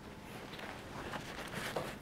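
Soft handling noise of a MindShift Gear rotation180 Pro camera backpack being lifted and set onto a wooden table: fabric rustling with a few light knocks, busier and a little louder in the second half.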